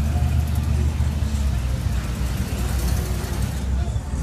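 A car engine running as the car rolls slowly past: a loud, steady low rumble, with faint voices in the background.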